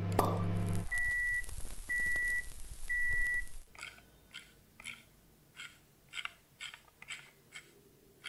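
Microwave oven running with a low hum that cuts off just under a second in, followed by three beeps about a second apart as it finishes. After that comes a run of soft, short clicks, about two a second.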